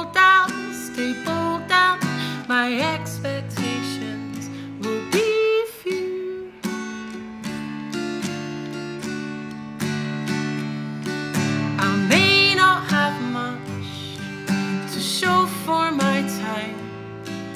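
Live solo acoustic guitar, picked and strummed in a slow song, with a woman's singing voice coming in for a few short phrases.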